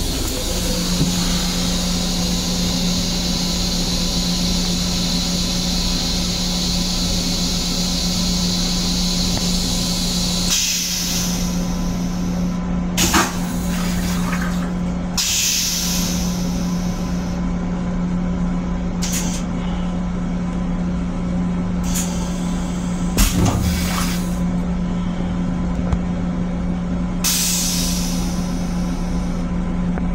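Long Island Rail Road M7 railcar toilet flushing: a long, strong hiss for about ten seconds, then several short hissing bursts a few seconds apart. A steady low hum runs underneath.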